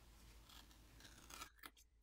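Plastic pry pick sliding under the edge of a Sony Xperia 5 V's glass back panel, slicing through the heat-softened adhesive. A faint continuous scrape lasts about a second and a half, then a few light clicks follow.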